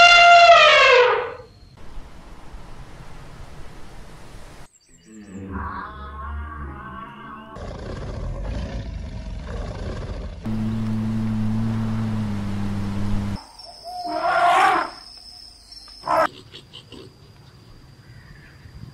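An African elephant trumpeting loudly: a long call that falls in pitch and ends about a second and a half in. After a short lull come several seconds of lion growls and low rumbling calls, then two shorter, higher-pitched calls near the end.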